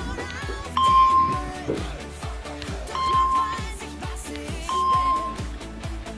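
Upbeat pop background music with a steady beat and singing, over which three short, clear chime tones sound: about a second in, about three seconds in and near the five-second mark. They are the spelling app's correct-answer chimes.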